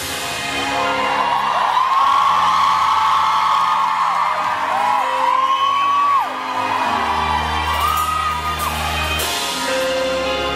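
Live pop band and singer performing in a concert hall, heard from among the audience, with long held and sliding sung notes over the band. The bass drops out for several seconds and comes back heavily about seven seconds in.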